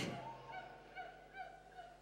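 A brief loud knock at the very start, then faint, short wailing cries from people at prayer, about two a second, each rising and falling in pitch.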